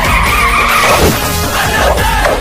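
Car tyres squealing as a car skids through a hard turn, over loud film music with a beat. The squeal is strongest for about the first second and then falls away.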